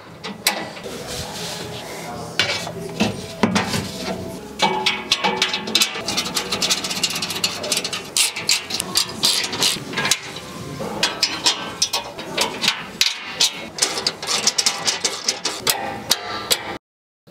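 Repeated metal clicks and knocks of steel storage shelving and fittings being handled and fitted in a vehicle's cargo area.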